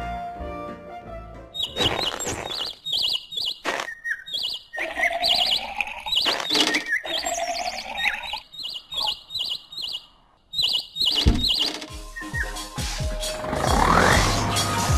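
Small birds chirping in quick repeated figures over music, with a few sharp knocks. Near the end a rising noisy blast, a cartoon fart sound effect.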